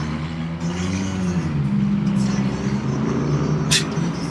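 A motor vehicle engine running close by, a steady low hum whose pitch drifts slightly up and down.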